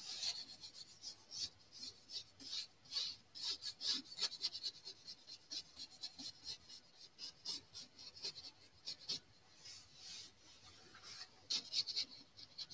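Paintbrush scrubbing black oil paint onto a stretched canvas in many short, uneven strokes, several a second, a dry scratchy brushing.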